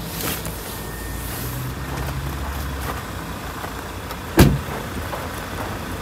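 A Land Rover Defender's door shut with a single loud thud about four and a half seconds in, after the driver has stepped out onto the pavement.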